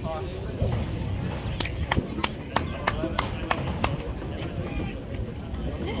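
One person clapping in a steady rhythm, about three claps a second for around two seconds in the middle, over low crowd murmur and rumble.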